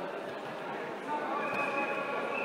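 Indistinct voices of spectators in a large, echoing sports hall, with a shouting voice coming up in the second half.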